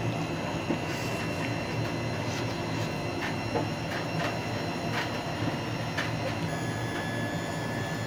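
A steady mechanical hum, like a running appliance, with a faint high whine and scattered light clicks.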